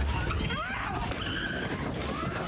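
Phone-recorded audio: a heavy, steady low rumble with raised voices shouting over it.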